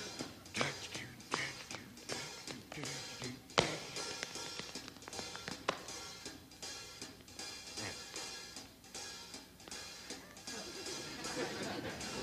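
Dance shoes tapping and scuffing on a stage floor in an irregular run of steps, with one sharp tap about three and a half seconds in, over faint background music.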